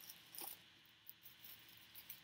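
Near silence, with a few faint short rustles of a brown paper package being handled, the clearest about half a second in.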